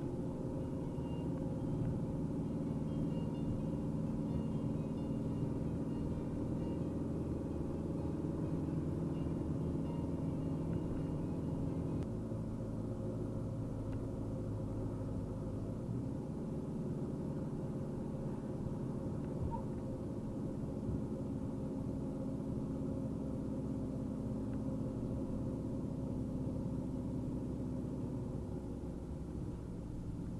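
Fiat Ducato van's 160 hp diesel engine and tyre noise heard from inside the cab while driving at a steady speed. The engine hum shifts about twelve seconds in and again a few seconds later.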